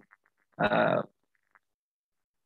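A brief, low, rough voiced sound, about half a second long, a little after the start: a man's wordless hesitation noise between sentences.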